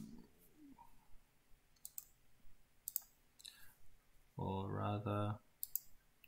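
A handful of sharp computer-mouse clicks, spaced irregularly. About four and a half seconds in, a man hums a held "mm" for about a second, louder than the clicks.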